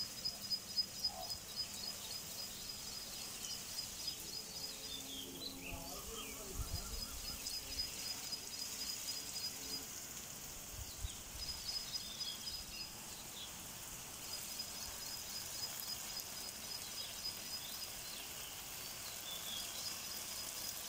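Outdoor garden ambience: a high, pulsing trill that runs in long spells with brief breaks, and a few short falling bird chirps now and then.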